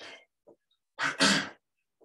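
A person breathing hard from exertion: short, breathy puffs, then a loud double exhale about a second in.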